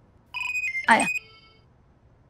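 Mobile phone ringing with a short electronic ringtone of a few stepped notes, lasting about a second before it stops: an incoming call being answered.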